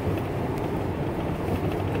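Steady road noise and engine hum heard inside a moving car's cabin.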